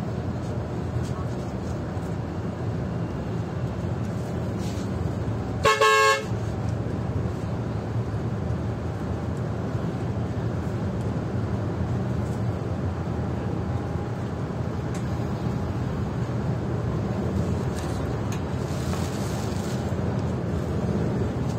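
Intercity coach's horn blown once, a short blast of about half a second about six seconds in, over the steady drone of the engine and road noise heard inside the coach's cabin.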